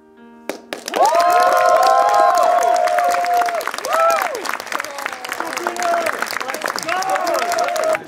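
A cinema audience clapping and cheering, with whoops over the applause, starting about a second in as the end credits roll. It comes straight after a short held chord from the film's soundtrack.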